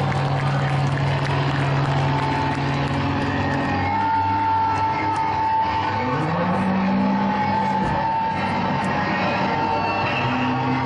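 Live rock band's amplified instruments holding a sustained, droning chord through a festival PA, with a rising pitch slide about six seconds in.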